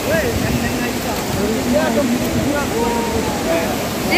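Steady rushing of a large waterfall, with faint voices of people talking over it.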